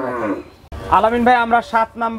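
A dairy cow mooing: one long low call that drops in pitch and ends about half a second in.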